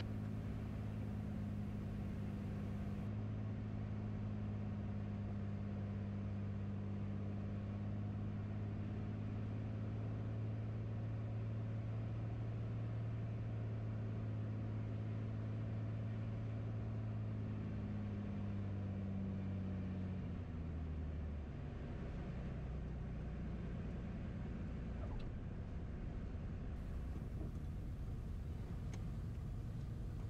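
Steady drone of a Beechcraft A36 Bonanza's six-cylinder Continental piston engine and propeller on final approach. About twenty seconds in, the engine note drops and eases off as power comes back for the landing.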